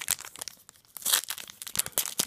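A foil trading card pack crinkling and being torn open: a dense run of crackles that grows louder about a second in.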